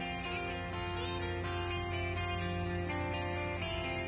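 A steady, high-pitched chorus of insects, heard together with soft background music made of long held notes that change every second or so.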